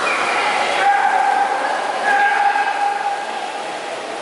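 Two long, drawn-out shouted calls, about a second in and again about two seconds in, echoing in a large indoor pool hall over a steady wash of hall noise.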